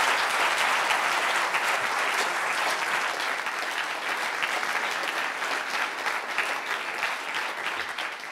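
Audience applause: a steady, dense clapping that slowly eases off toward the end.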